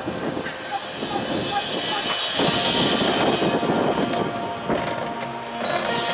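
Stadium crowd noise, then about two seconds in the high school marching band starts playing, with loud sustained chords.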